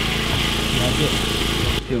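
A large, loud portable generator running steadily, a low drone under a loud hiss; it powers the haze machine. The sound cuts off abruptly just before the end.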